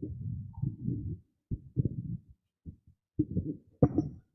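Microphone handling noise: irregular low thumps and rustling as a microphone is picked up and handled, with a sharper click near the end.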